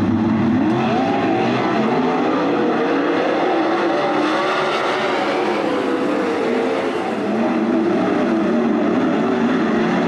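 Several 410 winged sprint cars' V8 engines at racing speed, their pitch rising and falling as they run through the turns and down the straights.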